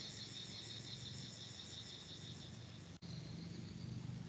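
Insects chirring faintly, a steady high, fast pulsing over a low hum. The sound cuts out for an instant about three seconds in.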